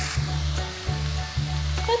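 Grated beetroot and carrot frying in oil in a pan, a fine sizzle as a wooden spatula stirs them, over background music with a steady low beat.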